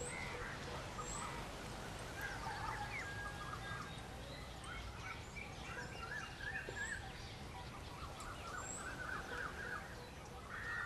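Outdoor ambience of birds chirping and calling, with quick runs of repeated short notes in the second half and a few thin high chirps, over a steady low background rumble.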